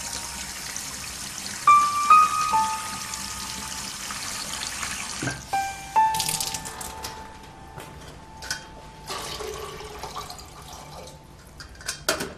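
Sparse piano notes over water running from a kitchen tap. The tap shuts off about five seconds in. After that come light clinks and knocks of kitchen items being handled.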